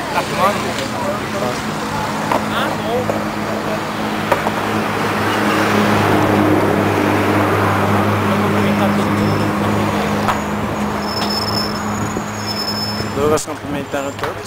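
Road traffic: a motor vehicle's engine running with a steady low hum, its noise swelling midway and easing off again, with brief talking near the start and near the end.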